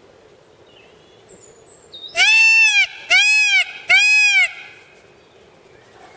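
Indian peafowl (peacock) giving three loud calls in quick succession, starting about two seconds in, each about half a second long and rising then falling in pitch.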